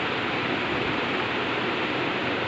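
Steady, even rushing background noise that does not change.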